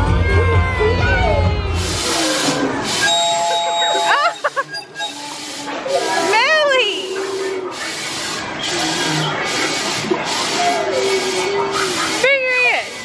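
A baby's high squeals and babbling over loud music that stops about two seconds in. After that the squeals go on over the rolling noise of a stroller's wheels on brick paving.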